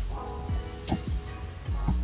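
A computer mouse clicking a few times over background music.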